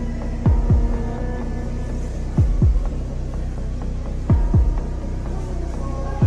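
Suspense film score: a slow heartbeat-like double thump every two seconds or so, three in all, over a low steady drone with held tones.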